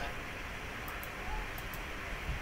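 Steady low background hiss of a quiet room, with a few faint, sharp computer-mouse clicks.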